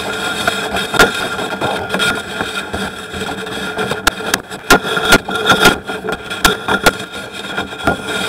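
A steady engine hum with irregular knocks and clacks, about one or two a second, as a sewer inspection camera and its push cable are fed along a drain pipe.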